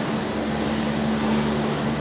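Gondola lift station machinery running with a steady, even hum.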